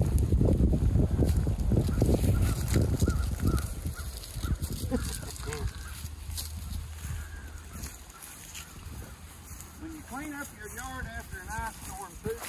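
A low rumbling noise with scattered knocks fills the first few seconds and fades. Near the end comes a quick run of about five honks, like geese calling.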